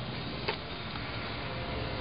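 Steady low background noise with a single sharp click about half a second in.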